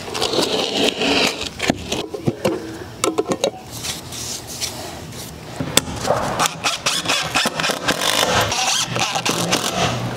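Handheld cordless drill run in short bursts, driving screws into wooden siding, among scrapes and knocks of lumber being handled.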